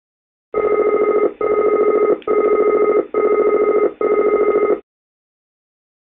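ATR cockpit warning-system aural alert: a loud pitched, rapidly pulsing tone sounding in five bursts of just under a second each, starting about half a second in and stopping after about four seconds.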